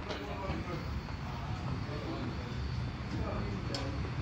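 Airport terminal ambience: a steady low rumble with indistinct voices of people around, and a single short click a little before the end.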